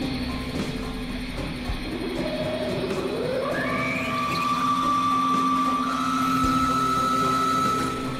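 Experimental electronic synthesizer music: a steady low drone, joined about three seconds in by a tone that glides upward and settles into a high held note, which steps slightly higher later on.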